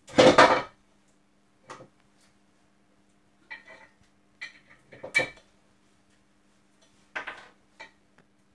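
Metal side cutters being worked on a plastic camera base: a handful of short clatters and clicks, the first and loudest right at the start, the others spread out and shorter.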